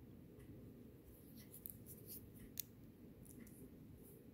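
Faint light clicks and ticks of a small copper-plated metal clasp being handled and turned in the fingers, over near-silent room tone.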